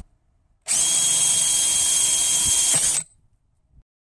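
Handheld power drill with a 3/8-inch bit boring into PVC pool pipe, running at a steady whine for a little over two seconds; it starts abruptly about half a second in and cuts off suddenly.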